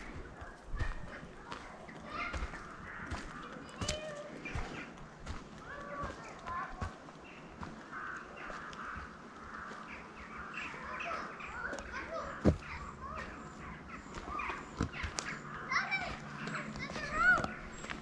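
Children's voices, faint and indistinct, calling and chattering, with scattered clicks and rustles of footsteps on a woodland path.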